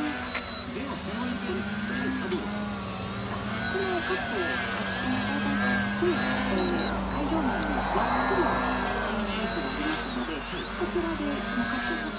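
Electric motors and propellers of two small RC 3D aerobatic planes hovering nose-up, a steady whine whose pitch wavers up and down as the throttle is worked to hold the hover.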